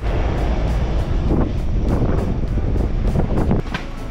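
Wind rushing over the microphone with the low rumble of a moving vehicle.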